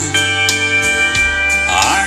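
Recorded music from an iPod playing through the aux input of a 1948 Cadillac's original radio and out of its 6x9 speaker, with long held notes.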